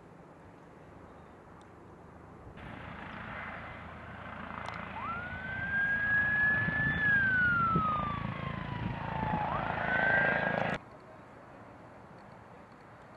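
Emergency vehicle siren wailing over the low noise of a vehicle. Its pitch rises sharply, sinks slowly, then rises again. The sound starts abruptly a few seconds in and cuts off suddenly near the end.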